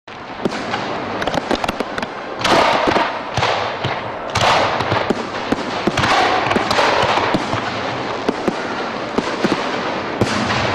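Fireworks going off: many sharp cracks, with longer crackling bursts about two and a half, four and a half and six seconds in.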